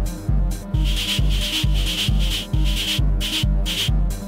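Homemade modular synthesizer playing a steady electronic groove: a low kick-like thump about twice a second, with bursts of hissing noise between the beats over a held drone.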